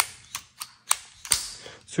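Sharp metallic clicks of a Ruger Mark IV 22/45 Lite pistol's action being handled right after reassembly, six or so separate clicks with two louder ones about a second in.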